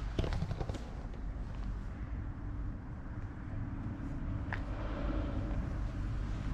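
Outdoor ambience dominated by a steady low rumble of wind on the microphone, with a few light clicks in the first second and one more about four and a half seconds in.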